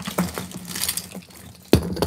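Costume jewelry clinking and rattling as it is rummaged out of a plastic bag, with one sharper click about three quarters of the way through.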